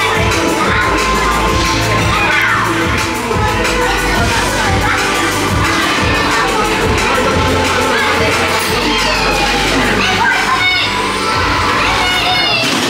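Music with a steady bass line playing over the chatter and shouts of a crowded dining room.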